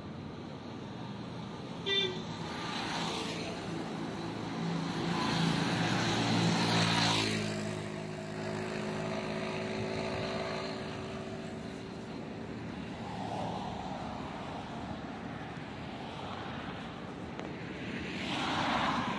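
Road traffic passing on a highway, vehicles going by one after another. A short horn toot comes about two seconds in. The loudest vehicle passes around six to seven seconds, its engine note falling away afterwards.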